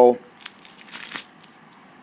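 Light crinkling and rustling as hands pick up a masking-taped pier foot from plastic sheeting, loudest in the first second.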